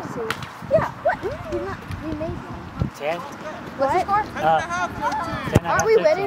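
Players' voices calling and chattering across the field, with several dull thuds of soccer balls being kicked; the loudest kick comes near the end.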